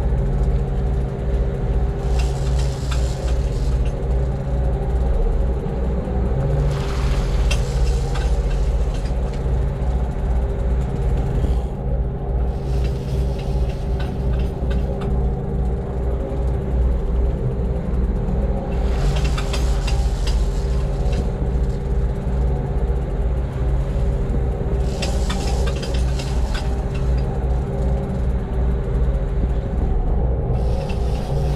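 A sportfishing boat's inboard engines running steadily underway, a deep pulsing rumble with a steady hum over it. A rushing hiss swells up four times, each lasting a second or two.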